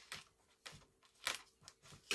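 Faint, scattered clicks and scrapes, about five in two seconds, the loudest a little past halfway: fingers handling a wing screw against a model airplane's wing.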